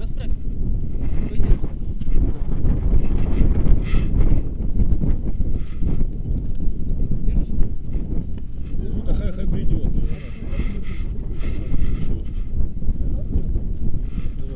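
Wind buffeting an outdoor camera microphone: a loud, steady low rumble with faint voices now and then.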